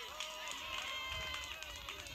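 A pause between sermon phrases: faint background voices and room noise, with no loud event.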